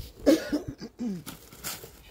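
A person coughing near the microphone, with a loud cough about a quarter second in and a shorter burst near the end.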